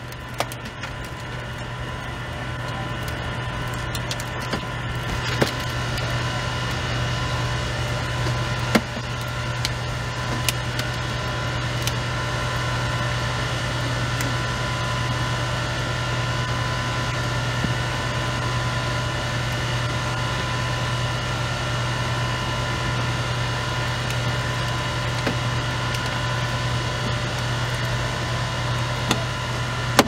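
Steady drone of a firefighters' hydraulic rescue-tool power unit running at a constant pace, with a faint whine over a low hum. There are a few sharp cracks, about five and nine seconds in, as the tool works the minivan's door.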